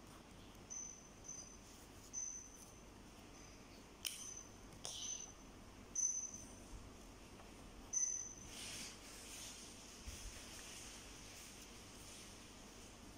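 Felt-tip marker squeaking on paper as it is stroked: a string of short, faint, high-pitched squeaks, with a couple of clicks in the middle and a scratchy rubbing stretch near the end.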